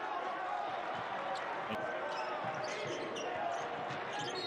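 Basketball game sound: a ball bouncing on the hardwood court over the steady background noise of a sparsely filled arena, with faint distant voices.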